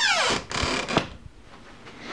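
Sliding closet door moved along its track: a falling squeal, then a scraping rumble, ending in a knock about a second in as the door reaches its stop.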